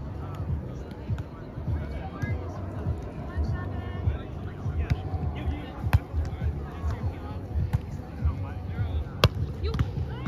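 Gusty wind buffeting the microphone, with distant voices. Two sharp slaps of a volleyball being struck, about six seconds in and again near the end.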